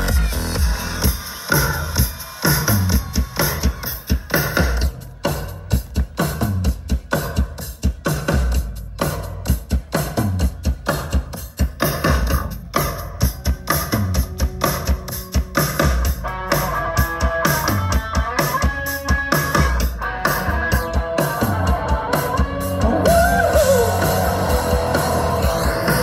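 Live rock band playing an instrumental intro: a drum kit hammering out a steady beat under electric guitars. The sound grows fuller about two-thirds of the way in and louder again near the end.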